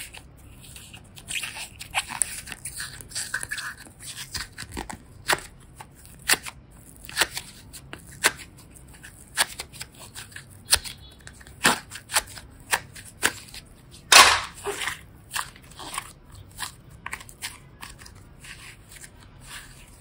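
Pink slime worked out of a clear plastic container by hand: irregular sharp clicks and crackles with soft squishing, the loudest crack about two-thirds of the way through.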